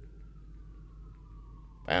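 Low steady hum with a faint thin tone slowly falling in pitch, then a man starts speaking right at the end.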